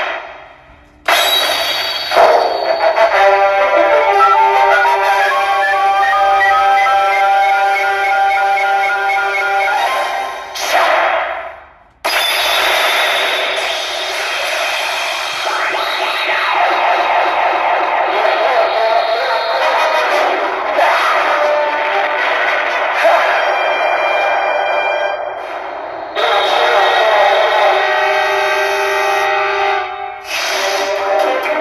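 Pachinko machine's own soundtrack: electronic music and effect sounds from the CR Pachinko Ultraman M78TF7 playing a reach sequence on two matching 3s. The music drops out briefly just after the start and again about eleven seconds in, then resumes.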